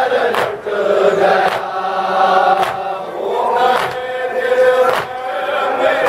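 Men chanting a Muharram noha, a mourning lament, with loud rhythmic chest-beating (matam) slaps landing about once a second.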